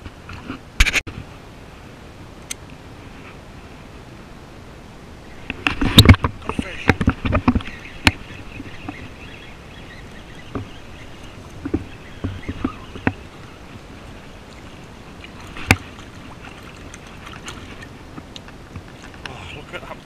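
Shallow river water splashing and sloshing around hands and gear, with a loud burst of splashing about six seconds in and a few sharp knocks.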